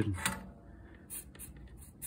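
A few short, faint scratching sounds, each a brief hiss, spaced about a third of a second apart in the second half, like something being scraped or rubbed lightly on the work surface.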